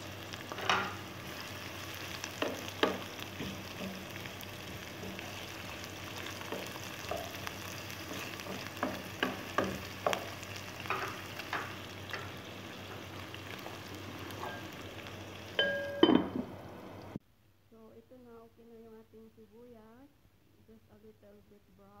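Sliced onion, garlic and ginger sizzling in hot oil in a frying pan, with scattered sharp pops and clicks. The sizzle cuts off abruptly about three-quarters of the way through, leaving a voice humming faintly.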